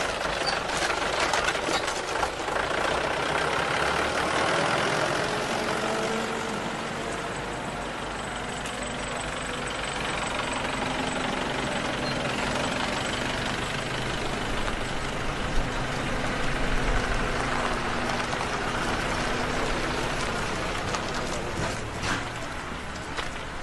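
Tractor engine running as it tows a loaded trailer slowly past, followed by the engine of a pickup truck driving by.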